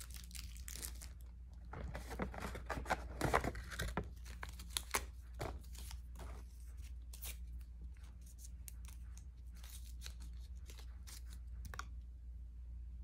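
Paper-and-plastic wrappers of injection supplies being torn open and crinkled by hand: a run of short rustles and rips, loudest from about two to five seconds in.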